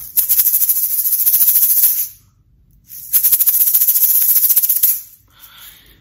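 A pair of small plastic egg shakers shaken in two bursts of about two seconds each, a dense high rattle of beads, with a short silent pause between them.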